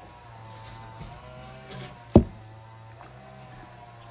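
A single sharp knock about two seconds in, over a low steady hum and faint background music.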